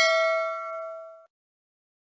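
Notification-bell chime sound effect ringing out with several steady tones, fading and gone about a second and a quarter in.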